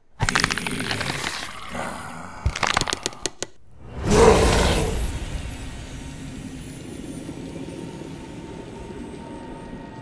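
Horror jump-scare sound design. A harsh noisy burst cuts in suddenly out of silence, with a few sharp clicks, then a short drop-out. The loudest hit of all comes about four seconds in and fades over a couple of seconds into a low, dark, steady drone.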